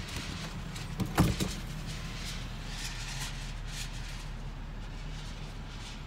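Buick 3800 V6 idling at about 1,000 rpm, heard from inside the car's cabin as a steady low hum. A few sharp knocks come about a second in.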